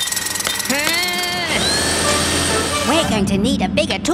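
Cartoon power-drill sound effect: a fast rattle against rock, under background music. Short wordless character vocal sounds come about a second in and again near the end.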